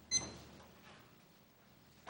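A brief sharp clink just after the start, ringing at a few high pitches as it fades, then quiet room tone with faint rustling.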